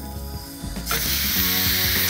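Raw tomahawk steak laid into a hot frying pan with a little olive oil: a loud sizzle starts suddenly about a second in and carries on steadily as the meat sears.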